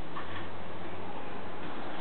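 A plastic toy airliner pushed and rolled along a wooden tabletop, with light ticking, over a steady background hiss.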